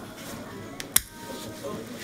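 A single sharp click about a second in, as a syringe-style microchip implant injector shoots an NFC chip under the skin of the hand.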